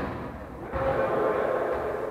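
Echoing noise of a large sports hall: indistinct voices and movement of players on the court, growing louder a little under a second in.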